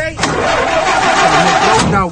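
Car engine cranking on its starter without catching: the car won't start. The cranking begins just after the start and cuts off near the end.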